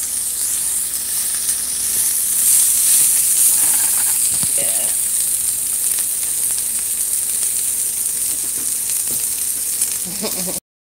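Diced smoked pork belly and onions sizzling steadily in a nonstick frying pan as the pork renders out its own fat, with no oil added. A silicone spatula stirs through them near the start.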